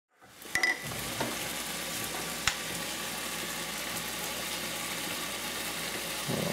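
Steady sizzle of food frying in a hot pan on a stovetop, with a few sharp clicks of kitchenware in the first three seconds.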